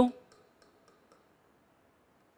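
A few faint, light clicks of a stylus tip tapping a pen-display screen during handwriting, in near quiet after a spoken word ends at the start.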